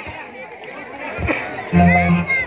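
A short break in the music filled with people's chatter, then the music with its heavy bass starts again near the end.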